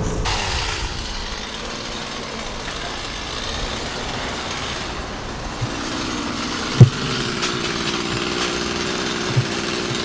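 Petrol hedge trimmer's small two-stroke engine running, its note steady through the second half. A few thumps sound over it, one sharp and loud about seven seconds in.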